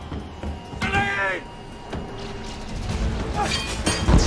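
Action-film soundtrack: a music and effects bed with a short pitched vocal cry about a second in and a sharp hit near the end.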